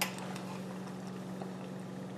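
A light clink of a metal spoon against a ceramic cup at the very start, then only a low steady hum with a few faint ticks.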